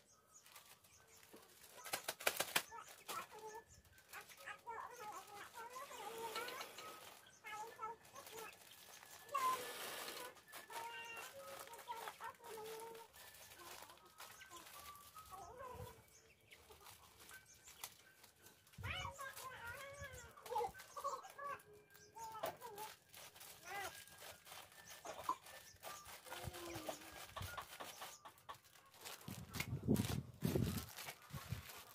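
Thin plastic bags crinkling and rustling as handfuls of neem flowers are pushed into them, with birds calling in the background.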